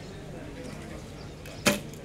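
Recurve bow shot: a single sharp crack of the string snapping forward on release, near the end, with a brief ring after it.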